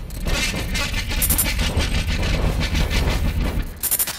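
A channel-logo intro sound effect: a dense, rumbling noise with rapid rattling hits and brief high, glittering flurries. It cuts off at the end.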